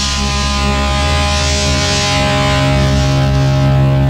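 Punk rock recording holding one sustained, distorted electric guitar chord that rings on steadily over a wash of hiss.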